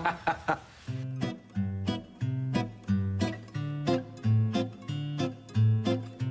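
Background music: an acoustic guitar picking a steady run of notes, about three a second, starting about a second in after a short laugh.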